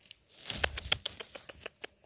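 Moss, twigs and forest-floor litter crackling and snapping as a gloved hand disturbs them while picking chanterelles. It is a quick run of small clicks lasting just over a second.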